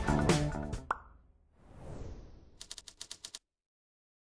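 Background music ending about a second in with a short rising pop sound effect, then a soft whoosh and a quick run of about eight typing clicks, a keyboard sound effect.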